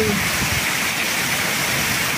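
Heavy rain pouring down steadily, a dense even hiss.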